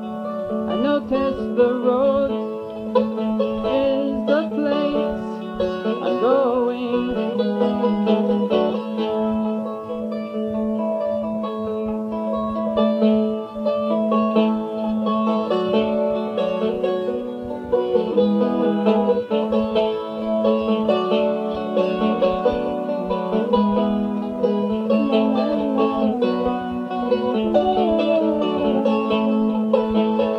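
Instrumental passage of an acoustic song: plucked strings over a steady held low note.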